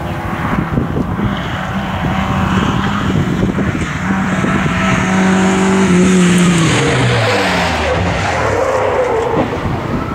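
Volvo saloon rally car approaching hard on the throttle and passing close by. The engine note climbs and grows loudest about six seconds in, then drops in pitch and fades as the car goes away.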